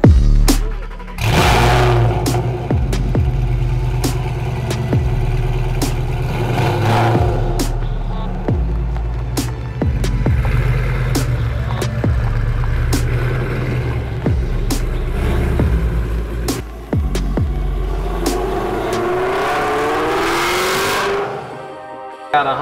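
Ford Shelby GT500's supercharged V8 running through its quad exhaust: it revs up sharply about a second in, idles with a deep rumble, and near the end revs with rising pitch as the car pulls away. Background music with a steady beat plays throughout.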